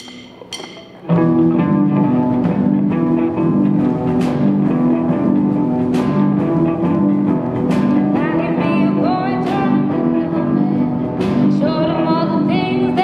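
A live rock band with electric guitars and bass guitar comes in loudly about a second in and plays on steadily. A female voice begins singing over it in the later part.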